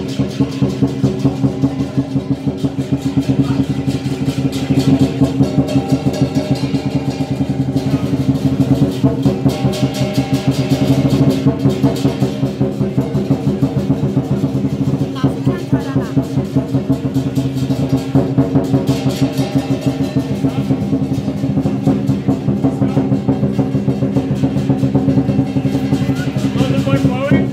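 Lion dance percussion band playing: a large drum beating a steady, fast rhythm over continuous ringing cymbals and gong.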